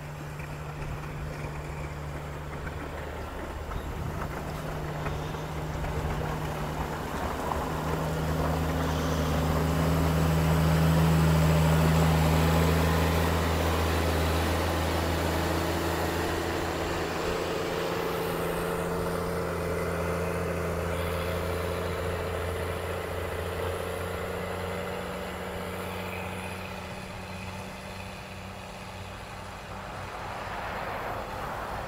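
Caterpillar 140K motor grader's six-cylinder diesel engine running under load as the grader blades soil, a steady low hum. It grows louder as the machine comes close, loudest about ten to twelve seconds in, then slowly fades as it moves away.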